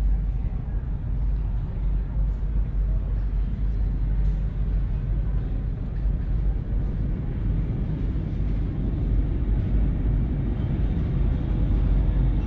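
Sci-fi spaceship ambience: a steady deep engine-like rumble with a haze of machinery noise, and indistinct voices murmuring underneath.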